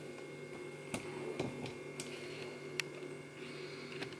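A few light clicks and taps, four in all, over a steady low room hum, as the camera is handled and moved.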